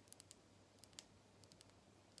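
Long fingernails tapping on a makeup brush's textured, scale-patterned handle: a scatter of very faint, irregular clicks.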